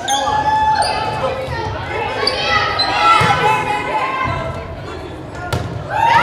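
Volleyball rally in a gymnasium: several raised young voices call out and cheer over each other, with dull thuds of the ball and one sharp smack of a hit near the end, echoing in the hall.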